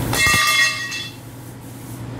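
Steel angle-bar and tubular frame of a fold-down table mechanism giving a brief metallic squeal as it is moved, a screech with several ringing high tones that fades after about a second.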